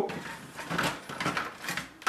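Toner cartridge and drum unit being slid into a Brother HL-L2405W laser printer, plastic rubbing and scraping along its guides with a few soft knocks.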